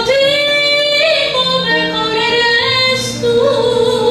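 A woman singing long, held notes into a microphone, accompanied by acoustic guitar.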